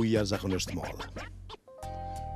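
A man talking with background music underneath. Near the end the sound drops out briefly and a few held musical notes begin.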